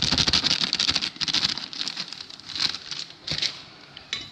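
Plastic bag crinkling as glutinous rice flour is shaken out of it into a stainless steel bowl. The rustle is dense for about the first two seconds, then thins to a few short rustles near the end.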